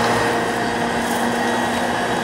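Steady running noise inside a Jōban Line rapid commuter train moving at speed, with an even hum over the rolling noise.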